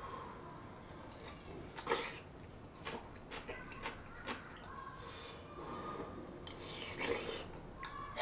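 Quiet eating sounds: a metal spoon clicking lightly against a small bowl several times, with soft chewing in between.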